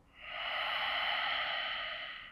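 A long, audible exhale through the mouth, about two seconds, swelling in and fading out as he breathes out while holding a stretch.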